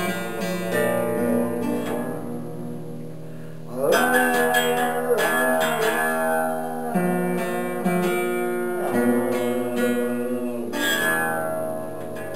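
Acoustic guitar played slowly and freely, its plucked notes and chords left to ring on for a long time. A fuller strum comes about four seconds in, and single notes and chords follow every second or two.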